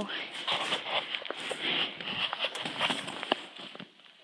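Rustling and scattered clicks and knocks of a phone being handled and clothing moving as someone climbs into an old vehicle's cab. The noise dies away near the end.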